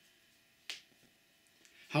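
A pause in a man's reading with a single sharp click about two-thirds of a second in, then his voice starting again near the end.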